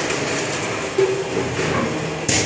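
Automatic paste-filling machine and can conveyor running: a steady mechanical din with metal cans rattling along the line. A single sharp metallic knock comes about a second in.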